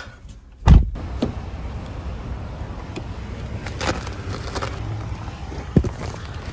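Heard from inside a car: a heavy thump just under a second in, then the car's low, steady rumble, with a few light knocks.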